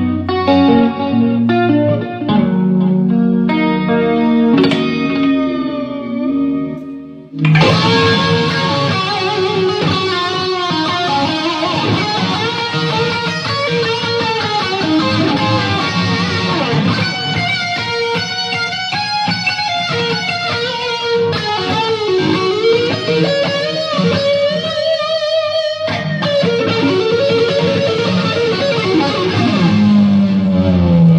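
Solo electric guitar through an amp with heavy chorus. For about seven seconds it plays notes and chords in a clean tone. Then it jumps suddenly to a louder, brighter, overdriven tone with busy lead lines for the rest.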